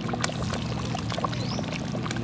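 Curry soup boiling in a steel wok over a wood fire, a steady bubbling with many small pops and crackles.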